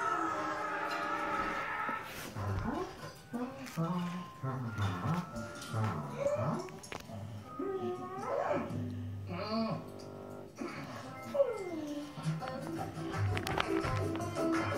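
Squawking, chattering cartoon-bird character voices with sliding pitch, over background music.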